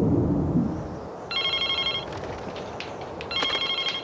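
Mobile phone ringing: two short electronic trilling rings about two seconds apart. A low rumble fills the first second.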